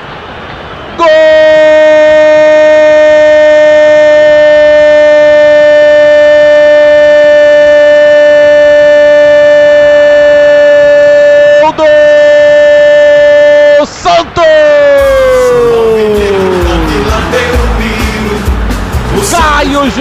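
A radio football commentator's long, held goal shout on one steady pitch, broken briefly twice, ending in a long falling glide. Music follows near the end.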